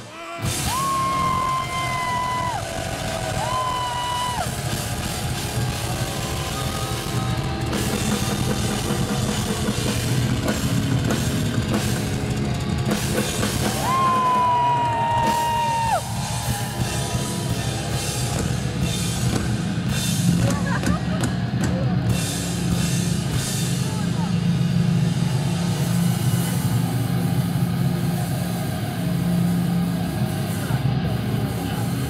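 Live heavy metal band playing loud, with drums and a steady low drone underneath. Right at the start there is a sudden break, and then a few long held high notes ring out, bending off at their ends.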